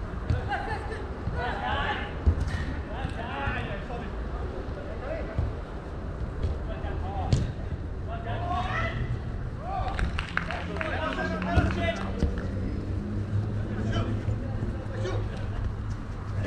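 Players' voices shouting and calling across the pitch, with a few sharp knocks of a football being kicked and a steady low hum underneath.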